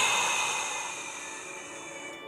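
A long, forceful Pilates breath out through the mouth, loudest at the start and fading away over about two seconds. Faint background music with held tones underneath.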